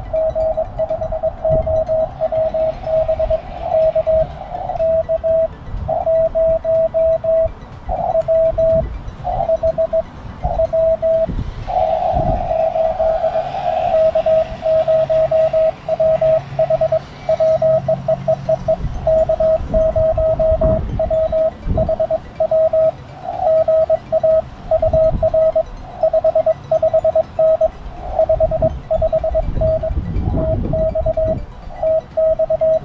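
Morse code sent by hand on a small Morse key, heard as the Lab599 TX-500 transceiver's sidetone: one mid-pitched beep keyed on and off in dots and dashes, with short pauses between characters. A low rumbling noise runs underneath.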